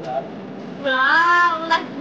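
A high-pitched voice singing one held, wavering note for about a second, beginning just under a second in.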